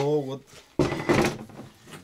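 Wooden blocks knocking and clattering as they are set down on a table, starting suddenly a little under a second in.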